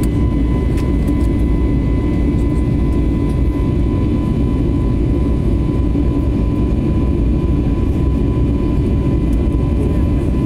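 Jet airliner cabin noise in flight, heard from a window seat beside the wing-mounted turbofan engine: a steady loud low rumble with a thin, unchanging high whine over it.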